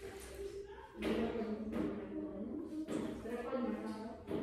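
Faint, muffled voices talking, starting about a second in.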